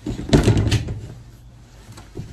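A short clatter of knocks and rattles about half a second in: things being moved about while searching for a mislaid pencil.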